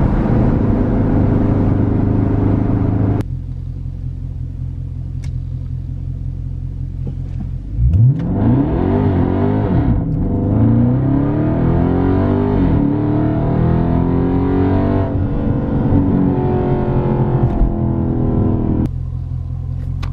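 Dodge Charger Scat Pack's 392 HEMI V8 heard from inside the cabin. It runs steadily at highway speed, eases off about three seconds in, then from about eight seconds goes to a hard full-throttle acceleration. The revs climb and drop at several upshifts of the eight-speed automatic before settling near the end.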